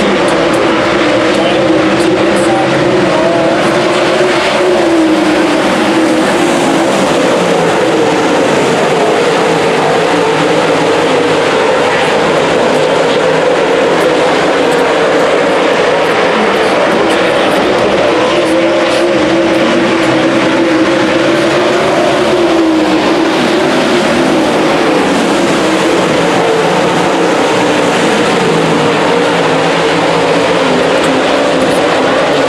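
A field of dirt late model race cars running laps under racing speed, their V8 engines loud and continuous, the combined engine note rising and falling as the cars circle the track.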